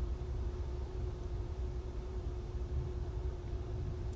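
Steady low rumble of a car heard from inside the cabin while driving, with a faint steady hum running under it.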